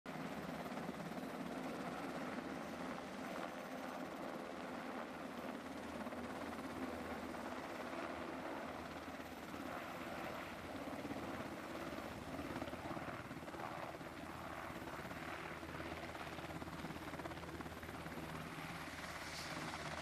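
UH-60 Black Hawk helicopter's rotors and twin turboshaft engines running, fairly quiet and steady, as it flies in and sets down.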